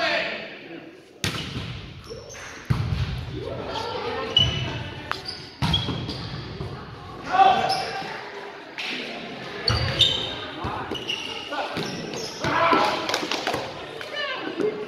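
A volleyball being struck during a rally in a gym: several sharp slaps of the ball off hands and forearms, ringing in the hall, with players calling out between the hits.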